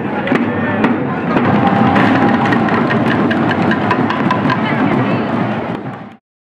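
Parade drumming by a danborrada group: many drums beaten with wooden sticks in a steady rhythm, sharp stick hits standing out, over crowd voices. It fades out near the end.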